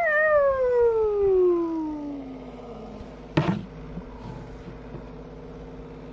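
A child's voice giving a long wail that slides steadily down in pitch and fades over about two and a half seconds, then a short loud vocal cry about three and a half seconds in.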